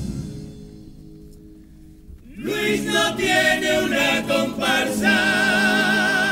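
Chirigota chorus of male voices singing in parts. A phrase dies away at the start, there is a pause of about two seconds, and then the group comes back in on a rising note and sings on, ending on a long held note with vibrato near the end.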